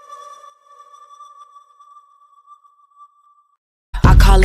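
The last held note of a song ringing out and fading away: a single steady electronic-sounding tone that dies out about three and a half seconds in. After a brief silence, the next song starts loudly right at the end.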